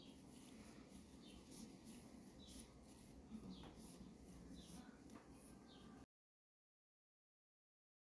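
Faint, soft clicks of knitting needle tips and light rustle of yarn as stitches are worked, with small ticks about once a second over a low room hum; the sound cuts off completely about six seconds in.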